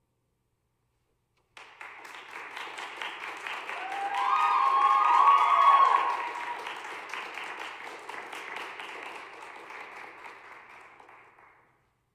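Audience applauding after a sung piece, starting suddenly about a second and a half in, swelling to a peak with a few voices rising above it in the middle, then dying away before the end.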